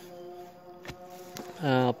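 Two faint knocks, about a second in and half a second later, from a hand tool working loose soil, over a faint steady hum of a few held tones. A man's short hesitation sound near the end.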